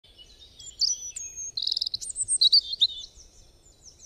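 Birdsong: a series of high chirps and whistled notes with a fast trill, from more than one call, growing busier toward the middle and fading near the end.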